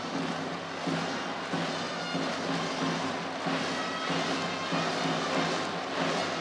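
Steady crowd din in a baseball stadium, with the fans' cheering-section music carried along under it.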